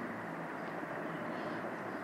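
Faint, steady background noise of the room with no distinct events.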